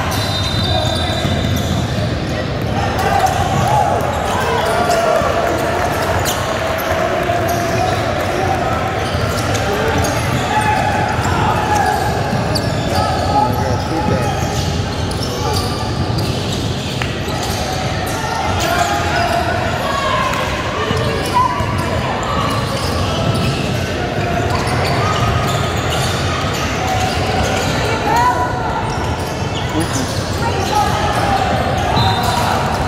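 Basketball dribbling and bouncing on a hardwood gym floor during play, amid steady talk and calls from players and spectators in a large indoor hall.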